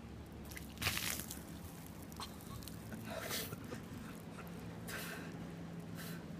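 Ice and water dumped from a bucket over a person's head: a short splash about a second in, then two fainter rushes a few seconds later.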